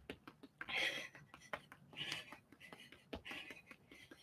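A woman breathing hard, with three short exhales about a second apart, over many quick light taps of her feet on an exercise mat during a fast-feet drill.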